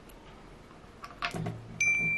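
A short electronic ding, one steady high tone that starts abruptly near the end, comes after a couple of faint clicks. It is the kind of notification-bell sound effect that goes with a subscribe-button animation.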